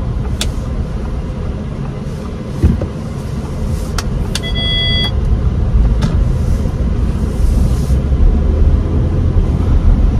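Cabin noise of a 2023 Audi Q5's 2.0-litre turbocharged four-cylinder and tyres, pulling away gently in comfort mode: a low rumble that grows louder over the second half as the car gathers speed. A thump about two and a half seconds in, a few light clicks, and a brief electronic tone about four and a half seconds in.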